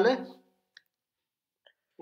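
A voice ends a word over a call, then near silence with two faint, short clicks about a second apart.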